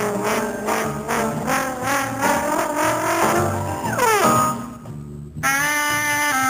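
Live blues band with a horn section playing: short repeated brass phrases, then a falling run about four seconds in. After a brief dip the horns come back in on held notes near the end.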